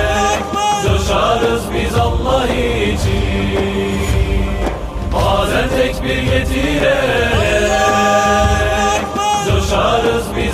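A Turkish-language Islamic nasheed: voices chanting a devotional song with held notes, over musical backing.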